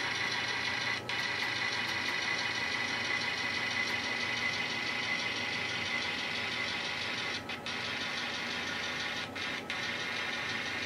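N scale model diesel locomotive backing slowly along the layout track: a steady engine drone with a high running tone, dipping briefly about a second in and a few times near the end.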